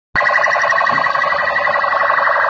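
Police vehicle siren sounding loudly, a steady, rapidly pulsing electronic tone that starts abruptly just after the beginning and holds at an even level.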